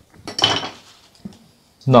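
A short metallic clatter with a faint ring about half a second in, as painting tools are put down and picked up at the palette, followed by a small tick.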